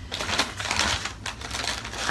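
Rustling and crinkling of packaging as a hand digs through a cardboard snack box for the next item: an irregular run of small crackles and taps.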